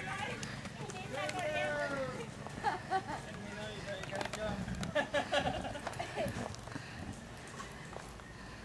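Indistinct voices of people talking at a distance, with faint hoofbeats of a Paso Fino stallion being ridden at a gait.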